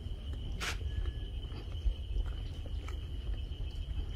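Outdoor ambience: a steady high-pitched insect drone over a constant low rumble, with scattered faint clicks and one brief hiss under a second in.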